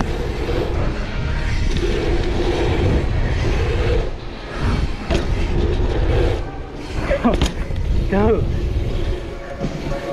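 Mountain bike ridden over packed-dirt jumps, heard from a camera mounted on the rider: wind rumbling on the microphone over the tyres rolling on dirt. A few quick squealing glides in pitch come about seven to eight seconds in.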